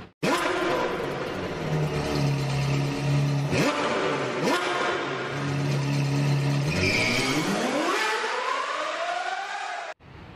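Sports car engine sound effect: a steady engine note with two brief pitch sweeps, then a long rising rev near the end that cuts off abruptly.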